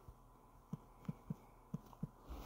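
Five soft, faint taps of a fingertip typing on a smartphone's on-screen keyboard, spaced irregularly.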